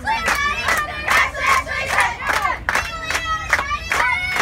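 A softball team's girls chanting a dugout cheer together in unison, keeping time with steady clapping at about two to three claps a second.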